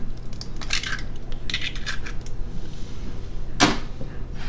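Light clicks and rustles of a cracked egg being opened over a glass mixing bowl, then one sharper clink near the end.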